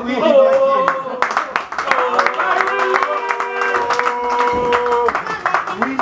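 A small group clapping, with a long held musical note sounding from about two to five seconds in.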